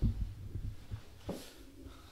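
Low, muffled thumps and rumbling from objects being handled and bumped on the desk close to the microphone.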